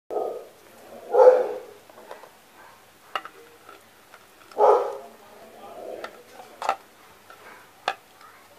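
Peeled boiled eggs set one at a time into a clay pot, giving a few light knocks. The loudest sounds are short loud calls, one at the start, one about a second in and one about four and a half seconds in.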